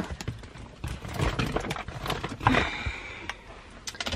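Handling noise in a car: irregular rustling and scattered light knocks and clicks as someone shifts in the seat and handles a phone, with leaves of greenery brushing near the microphone. There is a brief squeak about two and a half seconds in.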